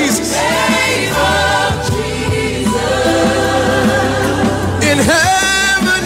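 Young woman singing a gospel song, holding wavering notes, over a steady accompaniment.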